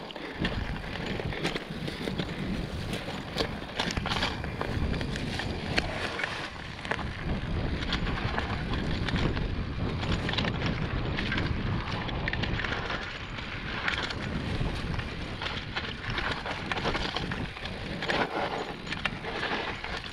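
Trek mountain bike descending a forest trail: tyres rolling over dirt and leaves, with frequent short rattles and knocks from the bike as it goes over bumps.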